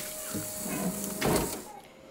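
Handling noise of party plates and packets being moved about, with a louder scrape about a second and a half in. A faint voice sits underneath.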